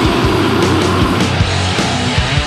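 Death metal: heavily distorted guitars and bass held on low notes over steady, fast drumming.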